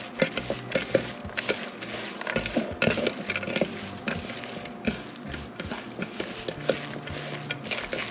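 Grated zucchini being tossed and squeezed by hand in a glass bowl: soft, wet rustling and squishing with many small, irregular clicks against the glass.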